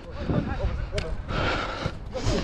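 Shouts of footballers calling during play, with a single sharp knock about a second in.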